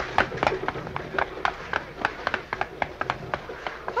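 Sound effect of a runaway team of carriage horses galloping: a quick clatter of hoofbeats, about five or six a second.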